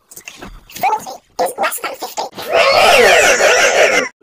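Short, choppy bursts of chopped-up voice, then a loud, harsh, distorted noise for about the last second and a half.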